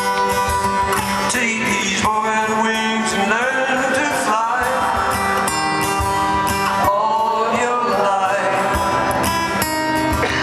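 A steel-string acoustic guitar fingerpicked, with a man singing the melody over it in long held lines, recorded live in an arena.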